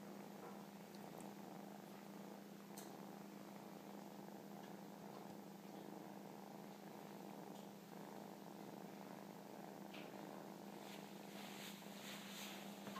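Kittens purring steadily and faintly while suckling, with a few soft ticks.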